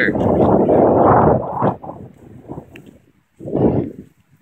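Gusts of wind buffeting the microphone: a long, loud rush over the first second and a half that dies away, and a shorter gust near the end.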